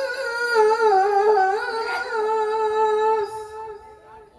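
A woman's melodic Qur'an recitation (tilawah) into a microphone: one long held phrase with wavering, ornamented turns in pitch, which fades out shortly before the end.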